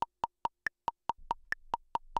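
A metronome clicking steadily, about four to five clicks a second (sixteenth notes at 70 beats a minute). Every eighth click is higher-pitched.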